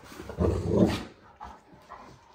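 A Great Dane barking once, a low, drawn-out bark about half a second in that lasts about half a second.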